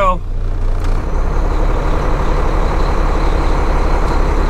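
Semi-truck diesel engine running under load as the tractor-trailer pulls forward from a stop, tugging against the trailer to check the coupling. The engine note shifts about a second in.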